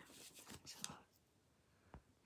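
Near silence. A faint whispered, breathy voice fills the first second, and there is a single soft click near the end.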